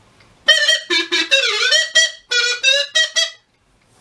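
A short, quick tune played on a reedy wind instrument: about nine short notes with one swooping note in the middle, stopping about half a second before the end.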